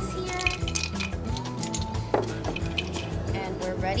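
Background music, with ice clinking in a glass pitcher and against a glass as a lemon mojito is tipped out to pour. A few sharp clinks, the loudest about two seconds in.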